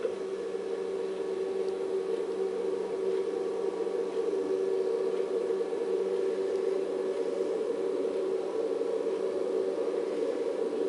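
Steady, muffled rushing noise of the QM-1 solid rocket booster's exhaust at the end of its static-test burn, heard from the broadcast through a television speaker in a room.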